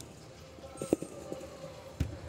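Hands and feet striking a sprung tumbling track during a tumbling pass: a few short, soft thuds, the loudest about a second in.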